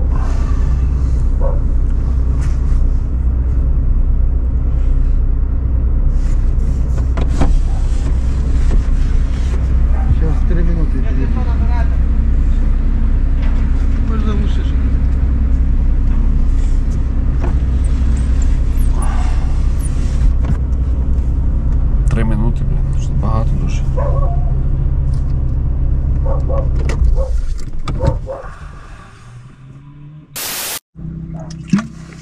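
Car engine idling steadily, heard from inside the cabin, then stopping near the end.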